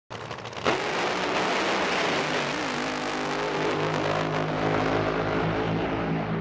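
Drag boat engine at full power on its run: a sudden loud jump in engine noise under a second in, then a steady hard-running drone that wavers slightly in pitch partway through.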